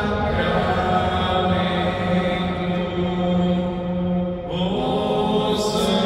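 Slow devotional church music with long held notes, the tune moving to a new note about four and a half seconds in.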